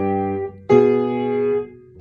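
Piano chords played by both hands: a held chord fades out, then a new chord is struck about two thirds of a second in and held for about a second before dying away.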